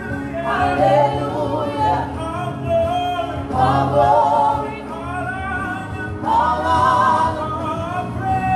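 A gospel praise-and-worship group of four voices, men and women, singing together in harmony into microphones, in held phrases of one to two seconds over a steady low backing.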